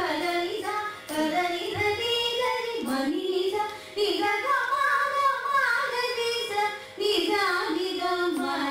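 Two women singing a Carnatic ragamalika together, the melody sliding and bending between notes, with three short breaks for breath.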